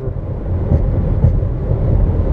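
Steady low road and wind rumble inside a moving Chevrolet car's cabin.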